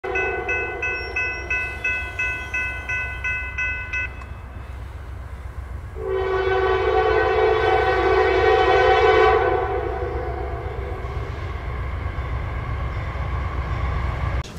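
Grade-crossing bell ringing about three times a second while the gate arm lowers, stopping about four seconds in once the gate is down. Two seconds later a freight locomotive's air horn sounds one long blast, over a steady low rumble.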